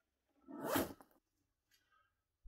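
A zipper on a black bag being pulled once: a short rasp lasting under a second.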